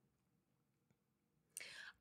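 Near silence in a pause of a woman's talk, then a faint, short intake of breath near the end, just before she speaks again.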